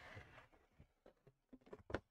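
Handling noise from a large plastic-hulled model ship being turned around on its display stand on a wooden bench: a short scraping rush at the start, scattered light clicks, and a sharp knock near the end as it is set down.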